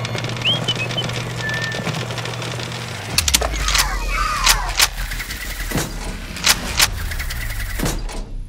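Cartoon sound effects for a cardboard machine starting up: about three seconds in, a low engine-like rumble begins under background music, with a string of sharp clicks and a few quick whistling glides over it.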